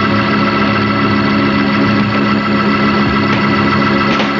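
Hammond organ holding one loud, sustained chord, steady with no change in pitch.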